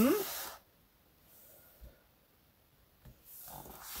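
A spoken word at the very start, then a quiet stretch with faint soft rustling and one small tick about two seconds in as a tape measure is swung across a paper pattern, and a soft rising hiss just before speech picks up again.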